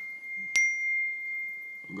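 iPhone text-message alert: a single bell-like chime struck about half a second in, its high ring fading away over a thin steady high tone.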